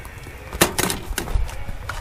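A run of light, irregular knocks and clatters as items are handled at a camp stove and its wire rack of bottles and jars.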